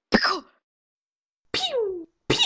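A person's short, cough-like vocal burst, then dead silence, then a voice sliding downward in pitch near the end.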